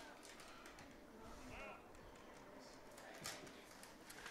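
Near silence, with a faint far-off voice about a second and a half in.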